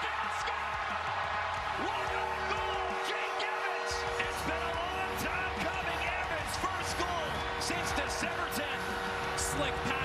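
Hockey arena crowd cheering a home-team goal, with music over the arena speakers coming in about four seconds in.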